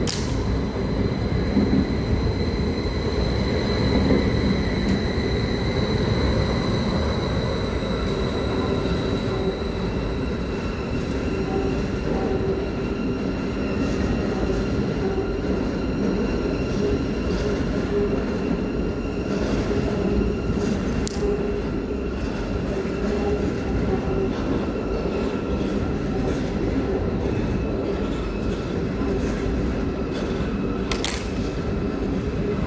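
SBB double-deck electric train running through a covered station: a steady low rumble of wheels on rail with a thin high electric whine that fades over the first ten seconds. Fainter steady tones remain, with a few short clacks about twenty seconds in.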